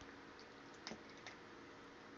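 Near silence: room tone with a few faint, short clicks, the clearest just under a second in.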